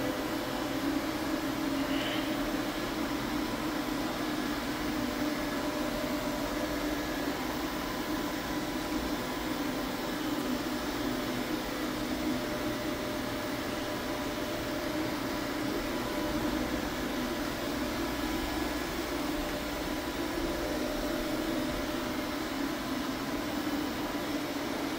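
UV floor-curing machine running steadily as it cures a fresh coat of finish on hardwood: an even hum from its cooling fans and lamp unit, with a few faint steady tones on top.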